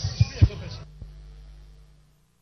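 A low, steady hum with two soft low thumps near the start and a single click about a second in, fading out.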